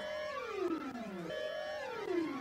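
Synthesized sweeping sound effect: layered electronic tones glide down in pitch, then start again and glide down a second time about halfway through, with fainter tones sliding up across them.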